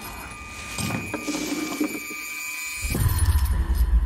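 Film trailer sound effects: faint high held tones with light rattling and clicks, then a deep low rumble with a pulsing bass from about three seconds in.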